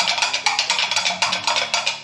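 A large metal spoon stirred vigorously in a plastic brewing bucket of honey-and-water mead must, knocking rapidly and evenly against the bucket. Background music with a low melody plays underneath.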